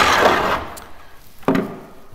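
Hands working the lid of a white plastic fermentation barrel: a loud scraping rasp of plastic on plastic for about half a second, then a single sharp knock about a second and a half in.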